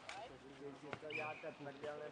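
Indistinct voices talking, with two sharp knocks, one at the start and one about a second in.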